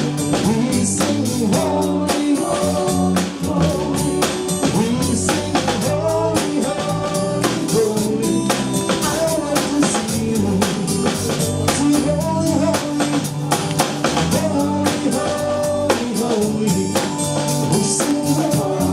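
Live gospel praise music: a man sings lead into a handheld microphone over a band, with a drum kit keeping a steady beat.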